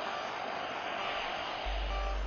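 Steady jet-engine hiss from the X-45A's Honeywell F124 turbofan as the aircraft taxis, with a low steady hum from the soundtrack entering near the end.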